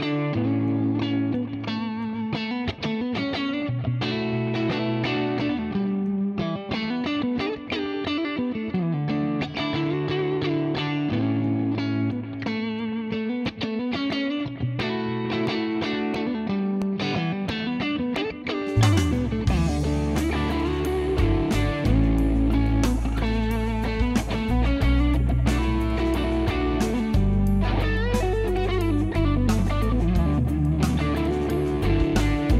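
Ibanez signature electric guitar with DiMarzio pickups played through a Mesa Boogie amp, a melodic lead over a recorded band backing track. About two-thirds of the way through, the drums and bass come in fuller and the music gets louder.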